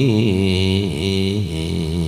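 A man's voice chanting a Javanese verse, drawing out long wavering notes with slow slides in pitch between them.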